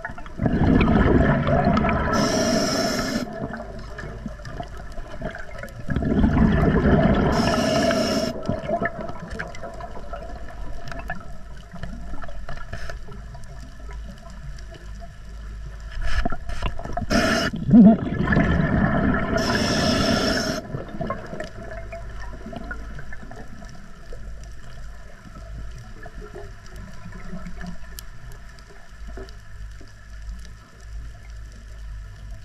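Scuba diver breathing through an Atomic regulator underwater: three breaths, at about one, six and sixteen seconds in, each a burst of rumbling exhaust bubbles that ends in a short high hiss. A few sharp clicks come just before the third breath, and a low wash of water noise runs between the breaths.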